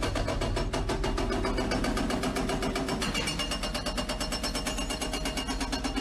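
Excavator running, heard from inside its cab: a steady machine sound with a fast, even pulsing over a deep rumble.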